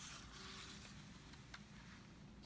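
Faint paper rustle of a picture-book page being turned, with a small tick about one and a half seconds in.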